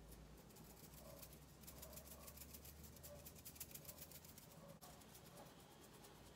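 Near silence, with faint quick brush strokes of a makeup brush sweeping loose setting powder over the face.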